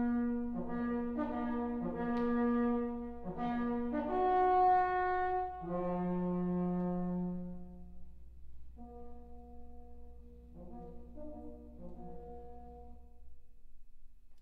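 A Bronze Age lur, a long bronze pipe with a small bell, sounding loud, long held notes that drop to a lower note partway through. A second, quieter phrase follows about nine seconds in.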